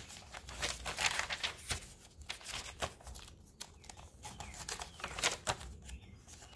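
Pages of a handmade junk journal, layered book and dyed papers, being turned and handled. Dry paper rustles and crinkles come thickest in the first second or so, then single scattered crackles.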